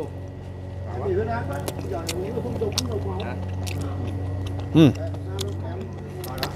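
A man chewing a bite of roast lamb rib close to the microphone, with small, sharp wet mouth clicks every second or so, under quiet background conversation.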